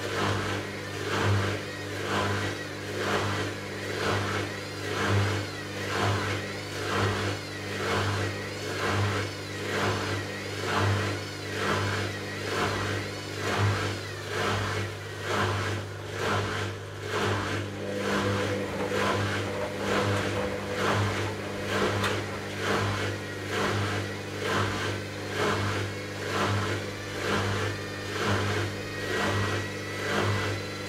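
Hoover DynamicNext DXA 48W3 front-loading washing machine tumbling a small load in water during a 40 °C baby wash. The motor hums steadily under a regular, rhythmic swish of clothes and water as the drum turns.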